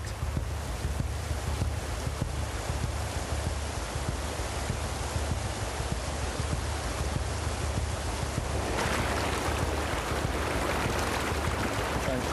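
River rapids rushing steadily around an open canoe, with a low wind rumble on the microphone; the rush gets louder about nine seconds in.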